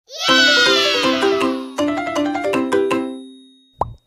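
Short children's intro jingle: a shimmering sweep that falls in pitch, then two quick phrases of ringing notes that die away. A brief rising pop sound effect comes just before the end.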